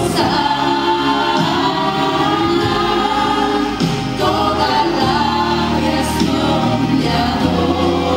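A woman singing a Christian worship song through a microphone over instrumental accompaniment, with long held notes and a steady low bass underneath.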